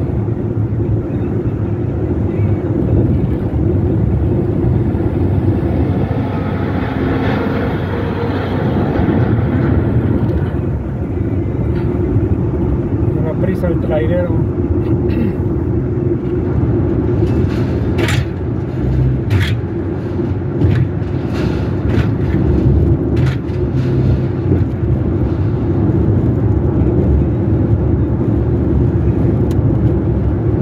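Car road noise while driving on a highway: a steady low rumble of tyres and engine. A hiss swells and fades about seven to ten seconds in, and several sharp clicks or knocks come in the second half.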